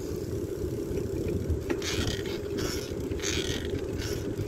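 Wind buffeting the microphone of a handlebar-mounted camera on a moving bicycle, over the rumble of the tyres on the road, with a few brief higher-pitched noises in the second half.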